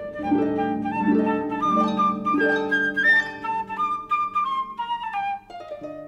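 Flute and harp playing together: harp chords struck and left ringing beneath a flute line that climbs over the first three seconds and then steps back down. The music thins out briefly about five and a half seconds in.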